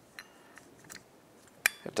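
Small metallic clicks of new brake pads being fitted into a motorcycle's rear brake caliper by hand: a few faint taps, then a sharper click near the end.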